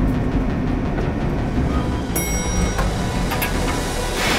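Tense drama background score with a low rumbling drone. A short, high ringing tone sounds about two seconds in.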